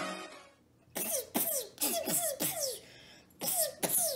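A child making mouth sound effects of Iron Man's hand blasters: a quick run of short 'pew' blasts, each falling in pitch, with a short pause partway through. Electronic intro music fades out just before.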